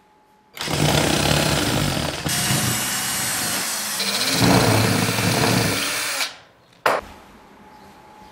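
HiLDA cordless drill running under load, driving a screw through a small metal bracket into the wall. It runs for about six seconds, with its pitch and character shifting a couple of times, and stops; about half a second later comes one short loud burst.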